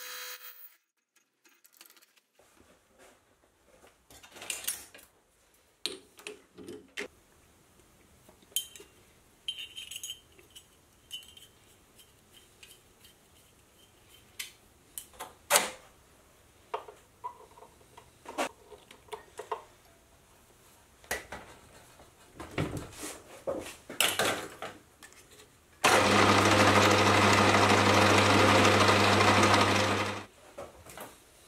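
Scattered metal clicks and knocks of hand work as a slotted steel sleeve and hose clamp are fitted on the back of a lathe spindle, then about 26 seconds in the Hafco Metalmaster geared-head lathe starts and runs loudly and steadily with a low hum, stopping just at the end.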